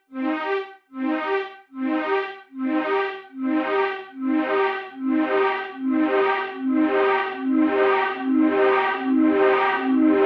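Bitwig Polysynth notes repeating through the Delay+ delay with its feedback set just above 100%. About one and a half pulses a second alternate between two low pitches. The echoes pile up, so the sound grows steadily louder and brighter.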